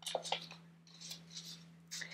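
Light clicks of craft things being handled on a wooden tray, then a soft rustle of a paper leaf being picked up.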